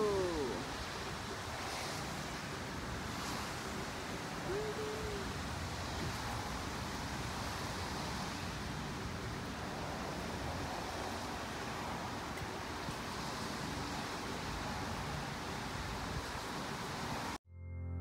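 Steady, even rushing of outdoor background noise. A little before the end it cuts off abruptly and soft ambient music begins.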